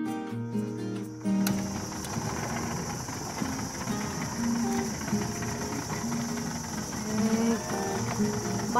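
Background music with held notes that change about a second and a half in, over a steady high insect drone and a low running hum from the boat's small motor.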